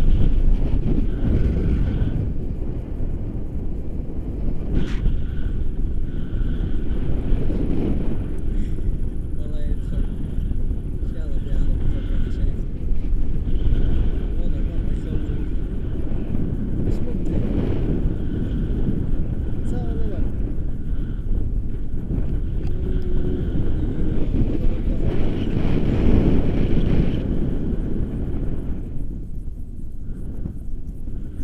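Wind buffeting the camera microphone during a tandem paraglider flight: a loud low rumble that swells and eases in gusts every few seconds.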